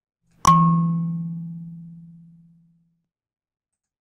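A single note from a coconut-shell kalimba: one metal tine plucked and left to ring, fading away over about two seconds, heard as a recorded sample played back.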